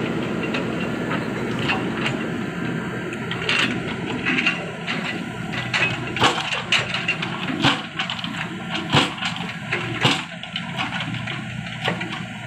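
Diesel engine of a JCB 3DX backhoe loader running under load, with irregular sharp knocks and clanks of the backhoe bucket working in soil and gravel. The knocks come thicker from a few seconds in, and the engine rumble thins in the second half.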